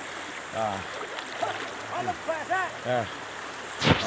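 Floodwater flowing and rushing steadily around a person wading through it, with short grunts and exclamations from the wader. A sudden loud burst near the end.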